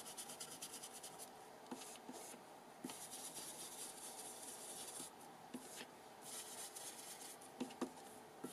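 Faint scratchy rubbing of a small ink pad being stroked along the edge of a paper tag to ink it, in repeated short spells, with a few light taps.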